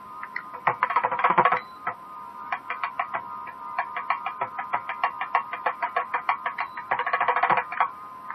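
Thavil drumming in sharp, quick strokes over a steady drone, with no nadaswaram melody sounding. A dense flurry of strokes comes about a second in and another near the end, with a lighter, even run of about five or six strokes a second between them.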